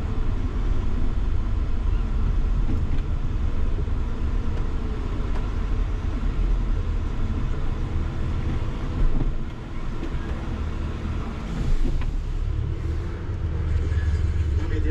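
Minibus engine and road noise heard from inside the passenger cabin while driving: a steady low rumble, with a brief knock about nine seconds in.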